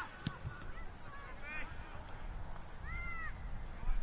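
Distant shouts from players and spectators across a football ground: a few short, rising-and-falling calls over a steady low outdoor rumble, with one sharp knock near the start.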